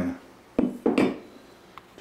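Metal knocks and a clatter from the homemade steel water-pipe mace being handled: a sharp knock about half a second in, then a louder, longer clatter, and a faint click near the end.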